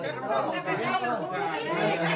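Several people chattering and talking over one another in a room.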